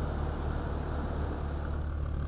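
Steady low drone of a running engine, with a constant deep hum.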